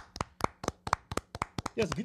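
Two people clapping their hands, a run of sharp, slightly irregular claps about four or five a second.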